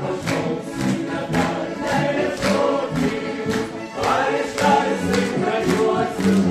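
Mixed vocal ensemble of men's and women's voices singing a Lithuanian song together, accompanied by two accordions playing steady rhythmic chords.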